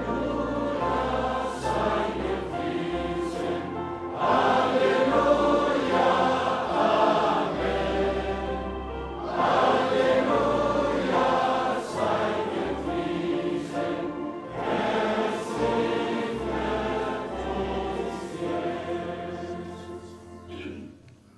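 A choir of voices singing a hymn in long, held phrases over a sustained low accompaniment, growing louder about four seconds in.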